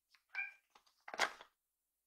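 A cat meowing: a short pitched call about a third of a second in, then a louder, rougher sound just over a second in.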